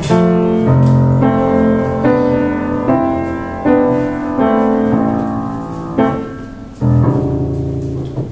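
Solo upright piano playing the closing chords of a song, a new chord struck about every three-quarters of a second. The last chord lands near the end and is held and left to ring.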